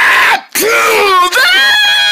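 A loud, high-pitched voice screaming in three cries with short breaks between them. The second cry wobbles up and down, and the last is held long and steady.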